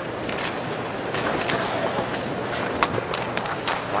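Ice hockey game sound: skates scraping on the ice and several sharp clacks of sticks and puck, over a steady murmur from the crowd.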